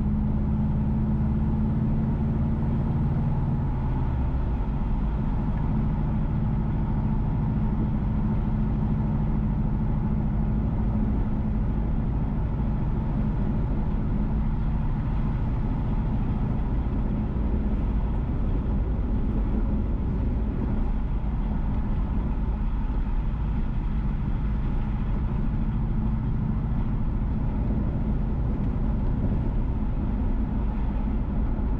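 Car running along a road at a steady pace, with a constant engine hum and tyre and road noise. The engine note shifts about four seconds in.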